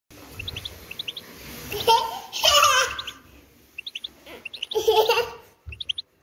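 Caged European goldfinch singing: a run of short high chirps, broken by two louder bursts of twittering about two seconds and five seconds in.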